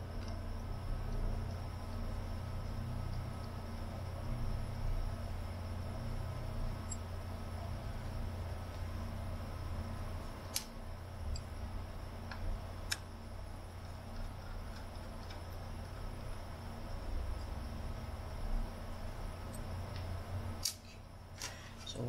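Screwdriver turning out the motor-bracket screws inside a UHER 4000 L portable tape recorder: a few faint scattered clicks of metal on metal, the clearest about halfway through, over a steady low hum.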